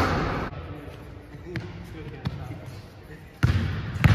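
A basketball strikes the hoop with a sharp knock that rings out through a large gym, followed by a few faint bounces. About three and a half seconds in, loud low thuds of a basketball being dribbled on a hardwood court begin.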